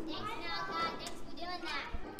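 A young child's high-pitched voice, a drawn-out, sing-song utterance without clear words, over the background of children playing.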